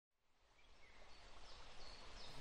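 Faint nature ambience fading in from silence: a soft hiss with a few short, high bird chirps.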